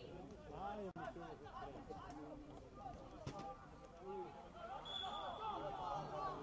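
Several distant voices shouting and calling across a football pitch during play, overlapping one another. A single sharp knock comes about three seconds in, and a brief high whistle sounds about five seconds in.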